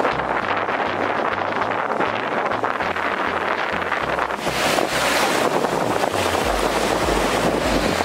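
Wind buffeting the microphone over the rush of sea surf, a steady noise that grows louder about halfway through.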